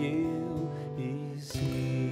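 Acoustic guitar playing sustained strummed chords, with a new chord struck about one and a half seconds in.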